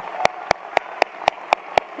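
Hands clapping in a steady, even rhythm, about four sharp claps a second, over the faint noise of an applauding audience.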